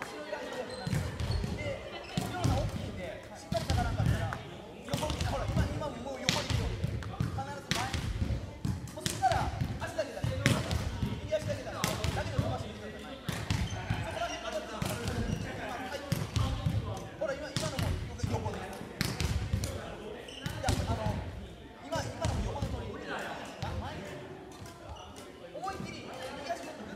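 Badminton rackets hitting shuttlecocks, a sharp crack every second or two, with footsteps thudding on a wooden gym floor as the player moves to each shot.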